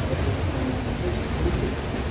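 Steady low rumble and hiss of room noise in a crowded pool hall, with faint murmuring from onlookers; no ball is struck.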